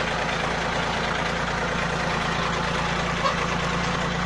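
Yanmar 1145 tractor's diesel engine running steadily while it pulls a five-shank subsoiler through the soil.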